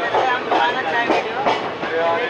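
Passenger train coaches running at speed, heard close from the side of the moving train: wheels clattering over the rail joints in a repeating rhythm over a steady rumble.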